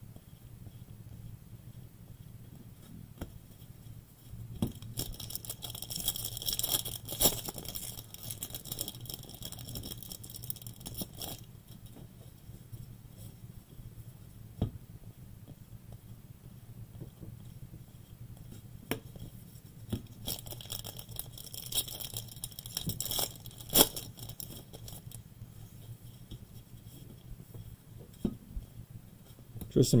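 A stack of trading cards being flipped through in gloved hands: the cards slide and flick against each other in two busier stretches of rustling, about five seconds in and again about twenty seconds in, with scattered sharp clicks, the loudest near the end. A low steady hum runs underneath.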